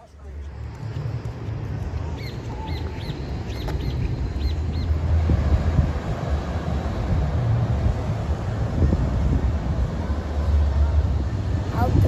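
Wind buffeting the microphone in a steady low rumble that grows louder after about four seconds, with a few faint high chirps in the first half.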